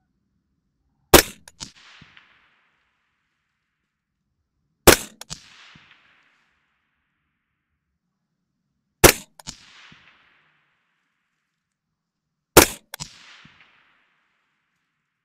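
Four single shots from a suppressed AR-15 carbine (14.5-inch barrel, SureFire suppressor) firing M193 ball, spaced about four seconds apart. Each sharp report is followed by a quieter second crack and a short fading echo.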